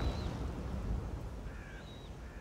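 Outdoor birds calling: a short arched call right at the start and a few more short calls in the last half second, over a steady low outdoor rumble.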